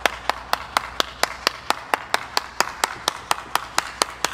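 One person clapping hands steadily and evenly, about four claps a second.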